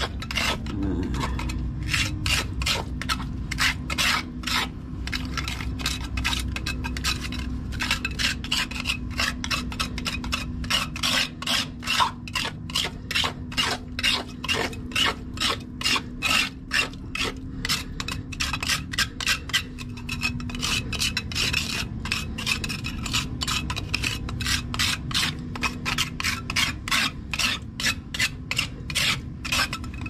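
A hand tool scraping back and forth over a wet concrete roof gutter around a floor drain, in quick repeated strokes, about two or three a second.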